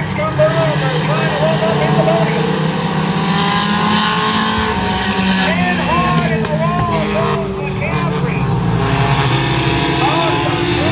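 A pack of pure stock race cars running past on a short oval track, several engines sounding together at full throttle with tyre noise.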